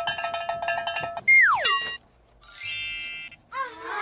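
Cartoon sound effects for shaking a piggy bank: a fast jingling rattle with ringing tones for about a second, then a falling whistle-like glide, then a bright held chime after a short gap.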